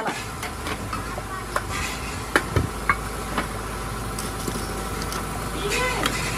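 Scattered light metal clicks and knocks as a steel axle rod is worked through a steel tricycle frame by hand, over a steady low hum.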